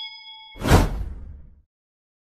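Outro sound effects. A bell-like notification ding rings on and stops about half a second in. Then a loud whoosh sweeps down from high to low with a deep rumble and dies away after about a second.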